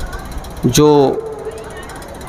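A man's voice through a public-address system: one drawn-out word about three-quarters of a second in, over low rumbling background noise.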